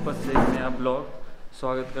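A man speaking Hindi, with a single sharp thump about a third of a second in.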